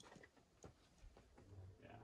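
Near silence, with a few faint clicks and a short spoken "yeah" near the end.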